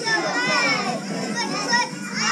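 Many young children's voices talking and calling out at once, a busy babble of small voices with adults mixed in.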